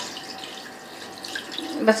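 Water poured steadily from a kettle into a pot of raw chicken and spices, the water for a chicken stock (yakhni).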